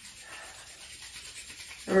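Bare palms rubbing briskly together, a faint, steady friction noise of skin on skin. A woman's voice comes in just at the end.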